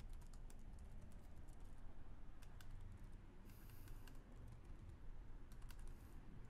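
Computer keyboard typing: faint, irregular key presses in short runs with brief pauses, over a low background hum.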